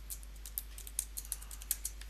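Computer keyboard typing: a quick, irregular run of light key taps as numbers are keyed in.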